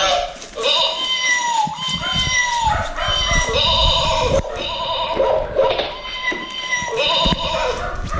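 Electronic children's musical play mat going off again and again as puppies tread on its pads: short tinny melodies and gliding electronic sound effects that start and break off every second or so, with low thuds from the puppies on the mat.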